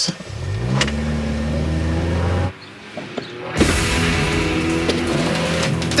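Car engine revving up as the car accelerates, its pitch rising over the first second and then holding steady. The sound cuts off suddenly about two and a half seconds in, and a steady engine sound resumes about a second later.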